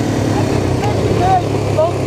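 Single-cylinder trail-bike engine running at a steady cruising speed, holding an even pitch with no revving.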